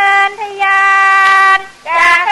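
A woman's unaccompanied voice singing in the Thai classical khap rong style, holding long, steady, high notes. The voice dips briefly just after the start, holds a long note, then pauses near the end as the next phrase begins.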